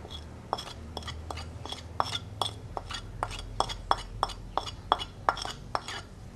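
A spoon clinking and scraping against a china saucer about four times a second, as cassava flour is pushed off the saucer into a bowl of flaked corn meal.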